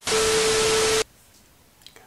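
Television static sound effect used as an editing transition: a loud burst of hiss with a steady hum tone in it, lasting about a second and cutting off suddenly.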